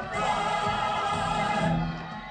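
Large mixed chorus with orchestra singing a long held chord on the sung word "buy", breaking off shortly before the end.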